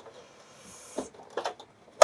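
The metal top cover of a President Grant CB radio being worked off its chassis. There is a faint scraping slide, then a few light metallic clicks and knocks between about one and one and a half seconds in.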